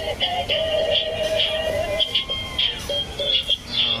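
Dancing cactus plush toy playing an electronic song through its built-in speaker, a melody of held and short notes.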